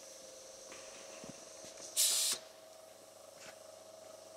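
Bespoke pot-removal machine, fed by a hose, squashing a tree's growing pot: one short, sharp hiss of released air about two seconds in, over a faint steady hum and a few light clicks.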